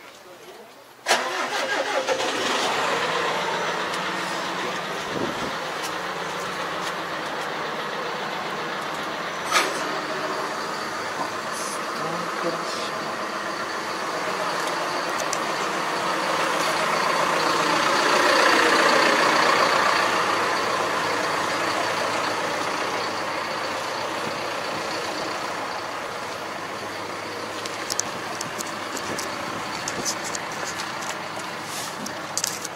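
A large tractor's diesel engine starts about a second in with a sudden jump in level, then runs steadily, getting louder for a few seconds past the middle before settling back.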